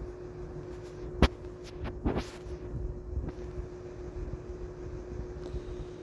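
Quiet handling sounds of crocheting with a metal hook and yarn: one sharp click about a second in and a short rustle around two seconds, over a steady low hum.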